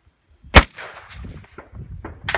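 A single loud rifle shot about half a second in, fired from the barricade at a distant target, followed by its echo trailing off.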